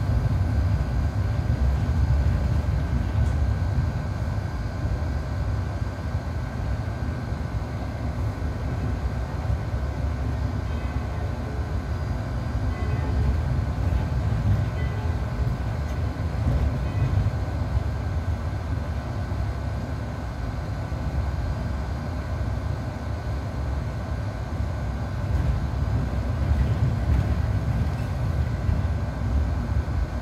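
Cabin noise of a Mercedes-Benz Citaro C2 G articulated city bus under way: a steady low rumble of engine, drivetrain and tyres on the road, with no distinct events.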